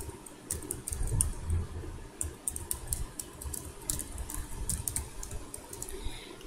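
Computer keyboard typing: irregular key clicks, a few per second.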